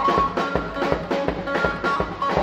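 Loud live band music: a drum kit keeping a fast dance beat, several strokes a second, under an amplified melody line with bending notes.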